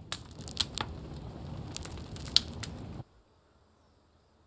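Irregular crackling and clicking over a steady hiss, cutting off abruptly about three seconds in.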